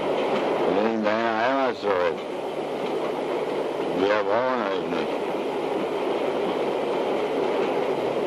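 Steady rumble and hiss of a passenger train carriage in motion, heard from inside. A man speaks briefly twice over it, the second time a sharp 'We don't need you!'.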